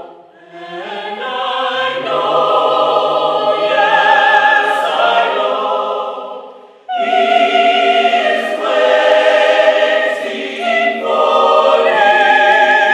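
A mixed choir of men's and women's voices singing together in harmony. The singing dips briefly at the start and swells back, then fades around six seconds in and comes back in suddenly at full strength about a second later.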